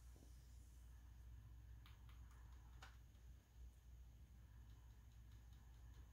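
Near silence: room tone with a low hum and a few faint clicks about two to three seconds in.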